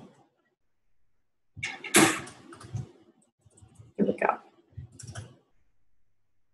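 A person's voice in three short, indistinct murmurs close to the microphone, with silence between them.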